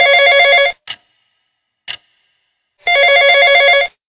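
Smartphone ringtone for an incoming call: a short stepped melody plays for about a second, stops, and plays again for about a second near the end. Two short clicks fall in the pause between.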